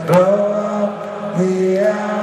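Rock band playing live, the male singer holding long, chant-like notes over sustained chords. There is a sharp drum or cymbal hit about a tenth of a second in, and the notes shift about one and a half seconds in.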